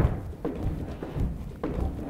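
Sneakered feet stepping on and off a plastic aerobic step platform in a walking rhythm, a dull thud about every half second.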